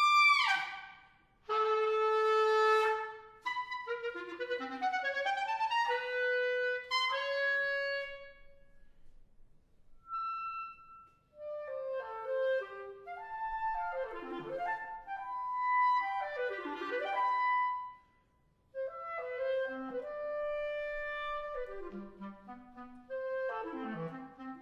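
Solo clarinet playing: a fast falling glide at the start, then a held note and quick runs up and down, broken by two short pauses.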